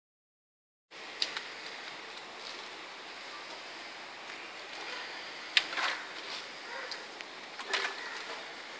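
Steady outdoor background hiss, broken by a few sharp clicks about a second in and near the middle, and short scuffing noises just after the middle and near the end.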